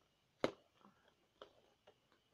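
A sharp click about half a second in, then a couple of fainter clicks, from fingers picking at packing tape on a cardboard-and-plastic action figure box.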